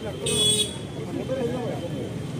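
Crowd of men talking and calling out in the street. A brief, high-pitched toot sounds about a quarter of a second in.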